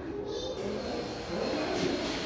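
Background hubbub of a large, echoing indoor hall: a steady wash of room noise with faint, indistinct distant voices and no single clear event.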